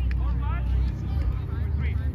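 Voices of volleyball players on an outdoor grass court, short calls and chatter, over a steady low rumble.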